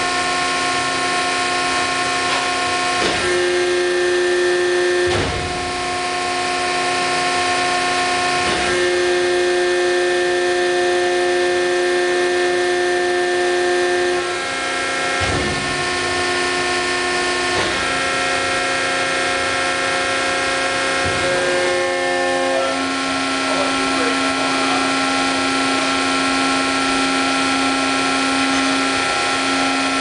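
Hydraulic press pump and motor running with a steady whine, its tones shifting about eight times as the ram moves through its auto cycle, with a short knock at each change. In the last several seconds it settles into a strong, lower steady hum as the press builds to tonnage.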